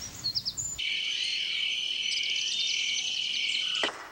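Insects chirping in a steady high chorus, coming in suddenly about a second in and cut off sharply just before the end, with a few short bird chirps before it.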